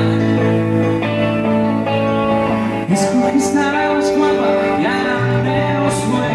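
Live pop-rock music from a duo: electric guitar and stage piano playing together, with a man singing.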